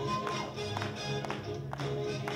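Swing jazz music with a steady beat, accented about twice a second, with held horn-like notes over a bass line.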